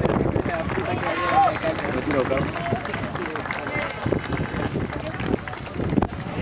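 Indistinct shouting voices of players and onlookers at a football pitch, over a steady outdoor background hiss.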